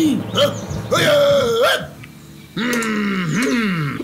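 A man's voice making drawn-out, exaggerated non-word vocal sounds: a higher held cry about a second in, a short pause, then two falling groans near the end.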